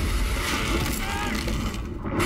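A person splashing down into a pool, followed by churning water, with a voice briefly heard near the middle.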